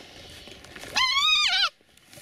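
A deer fawn gives one loud, wavering bleat about a second in, rising and then falling in pitch and lasting under a second, the distress call of a fawn being held in a person's hands. Faint rustling in the grass comes before it.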